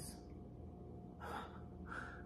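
A woman's breathing, two short audible breaths about a second in and near the end, faint, in exasperation.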